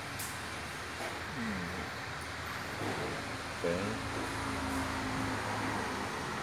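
Oxy-hydrogen electrolysis generator running at 76% power: a steady hiss of gas bubbling through its water filter bottles, with a low hum. Two short pitched sounds rise above it, a falling tone about one and a half seconds in and a tone held for about a second near the middle.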